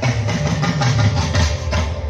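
Live band music played through a concert PA and recorded from the audience, with heavy bass and a drum kit keeping a quick, steady beat.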